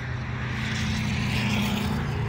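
A steady engine drone, swelling slightly toward the middle and easing off again.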